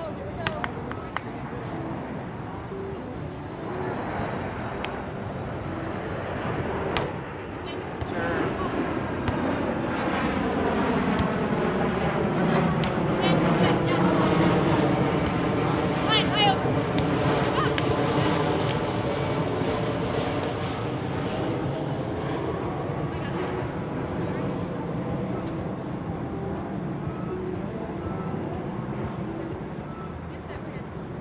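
An aircraft passing overhead: its engine sound swells over about ten seconds, peaks midway, then slowly fades away. A few short sharp knocks sound in the first seconds.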